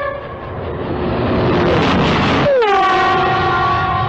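United Aircraft TurboTrain rushing past at speed with its horn sounding. The noise swells to its loudest about two seconds in, and the horn's chord drops in pitch as the train goes by, then holds a lower, steady note.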